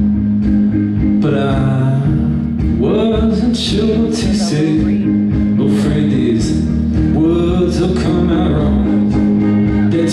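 Live band music: acoustic guitar and drums, with a male voice carrying a wavering melody over them.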